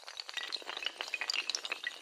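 Sound effect of many small hard tiles toppling like dominoes: a dense, continuous run of quick clinks and clicks.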